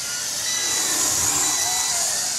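Toy quadcopter (WLToys V333 Cyclone II) in flight, its four motors and propellers whirring steadily at a high pitch. The pitch rises and falls briefly near the end as it manoeuvres.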